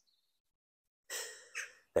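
A man's audible breath in, under a second long, starting about a second in, taken just before he speaks again.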